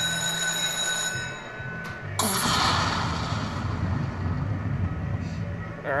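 Lightning Link slot machine sound effects. A ringing multi-tone chime fades out over the first two seconds. Then, about two seconds in, a sudden crackling thunder-crash starts and rumbles on over a low pulsing beat as the lightning strike triggers the spin feature.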